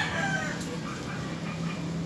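Faint bird calls, heard as the music note before them dies away over a low steady hum.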